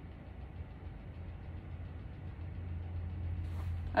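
A low, steady hum that grows slightly louder toward the end.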